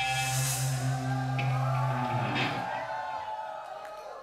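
A rock band's closing chord on electric guitars and bass, with a cymbal wash, held and then ringing out. It fades steadily over the second half as the song ends.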